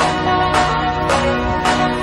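Background music: sustained tones over a steady beat of about two strikes a second.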